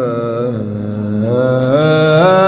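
A male munshid's solo voice singing an Islamic ibtihal, holding a long wordless melismatic note that steps up in pitch near the end.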